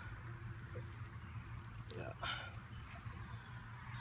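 Water trickling out of the threaded end of a garden hose onto grass as the pump fills during priming; the flow means the pump is full. A steady low hum runs underneath, with a brief rustle about two seconds in.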